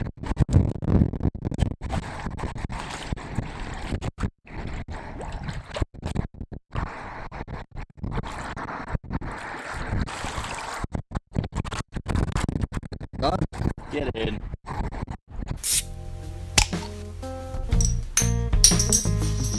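Water sloshing and dripping as a carp is released from a wet mesh retention sling at the lake edge and the sling is lifted out. Near the end, music with a shaken, tambourine-like rattle comes in.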